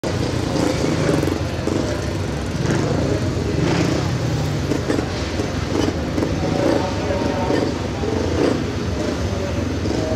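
Speedway motorcycles, 500 cc single-cylinder methanol-burning engines, running at a race meeting, with people's voices mixed in over the engine noise.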